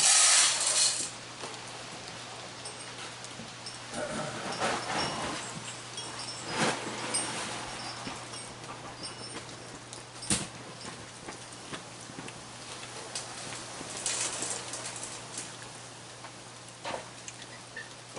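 Raccoons eating sunflower seeds off a wooden deck: scattered crunching clicks and light knocks from shells and paws. A short hissing rustle comes right at the start and another about fourteen seconds in, over a faint steady low hum.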